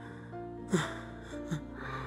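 Soft background score with sustained notes. Over it, a tearful woman makes two short gasping breaths, about a second apart.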